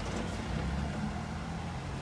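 A vehicle engine idling steadily, a low, even hum with no speech over it.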